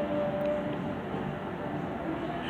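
Steady background noise with a faint held tone that fades out a little under a second in.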